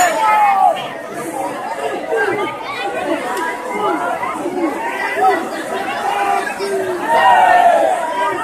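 A large crowd's many voices calling and talking over one another, swelling louder about seven seconds in.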